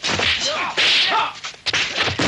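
Kung fu film fight sound effects: swishing swings and sharp, whip-like punch impacts, several in quick succession, the biggest about a second in. Short shouted cries come between the blows.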